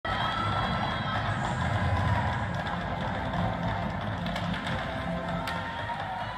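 Ice hockey arena sound: music with crowd noise through the opening faceoff, and one sharp click about five and a half seconds in.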